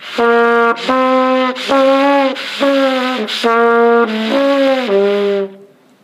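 Trumpet played deliberately with nowhere near enough air: a run of about seven separate notes with the right fingerings and tempo, but it sounds bad for lack of fast, forceful air through the horn.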